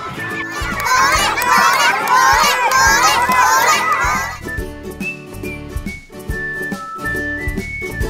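A crowd of children shouting and cheering excitedly for about three and a half seconds over background music; the music carries on alone after the cheering stops.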